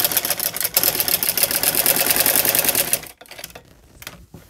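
Sewing machine stitching fast through cotton fabric with a rapid, even clatter, then stopping abruptly about three seconds in, leaving only a few faint clicks of the fabric being handled.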